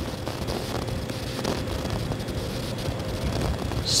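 Steady background noise with no distinct events: a wind-like rumble and hiss with a faint steady hum.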